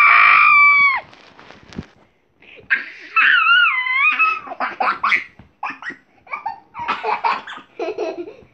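A child's high-pitched scream, rising and then held for about a second at the start. A second high, wavering squeal comes about three seconds in, then choppy bursts of laughter.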